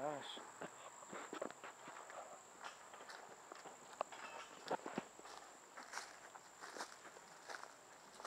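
Footsteps walking over grass and dry leaf litter: irregular soft crunches and rustles, a few sharper steps. A thin, steady high-pitched tone runs underneath.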